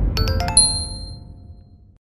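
Electronic intro jingle ending on a cluster of bright chime notes struck about half a second in, which ring and fade out over a dying low rumble.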